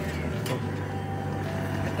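Steady low roar of a propane torch burning, used to singe the hair off a wild hog carcass, with one sharp click about half a second in.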